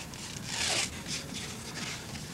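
A layer of pounded black ash wood being peeled by hand off the log along the crushed growth rings, ripping in a longer tear about half a second in and in several shorter tears after it.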